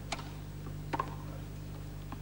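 Two tennis balls struck off racket strings about a second apart, a serve and then its return, each a short sharp pop over a steady low hum.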